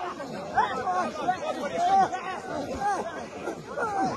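Several voices talking over one another in an indistinct chatter.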